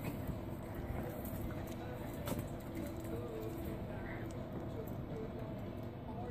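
Quiet background noise with a few faint clicks and scuffs from two dogs playing on a concrete floor.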